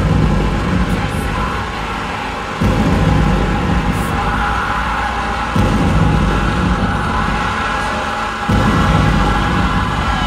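Loud, dark live electronic music played on keyboard and electronics: a dense wall of noise over a deep booming low layer that comes back in about every three seconds, each time with a jump in loudness.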